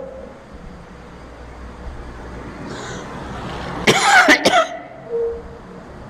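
An elderly man coughing into a close stand microphone: a short burst of two or three harsh coughs about four seconds in, after a pause.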